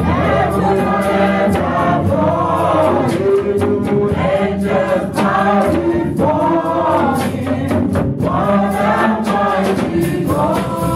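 Live gospel worship music: a group of singers on microphones with a small band, over a steady beat.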